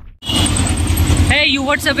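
The tail of a booming intro sound effect cuts out, and street traffic noise with a low engine rumble comes in; a man starts talking a little after halfway.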